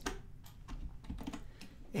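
Several soft key presses on a computer keyboard, short separate clicks spread through the moment, as a copied command is pasted into a terminal.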